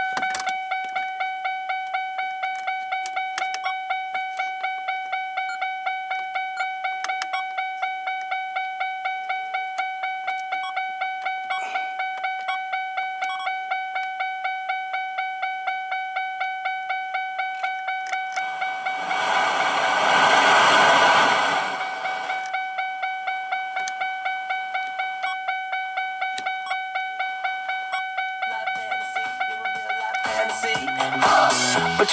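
Car warning chime dinging over and over at an even pace of two or three dings a second, each ding fading quickly. About 19 seconds in, a loud rush of static-like hiss swells for roughly three seconds, then stops.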